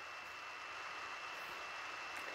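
Faint steady room tone in a pause between speech: a low hiss with a thin, steady high-pitched whine running under it.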